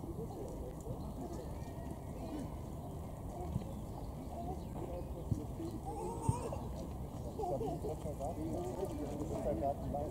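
Indistinct voices murmuring in the background, with a few sharp clicks about midway through.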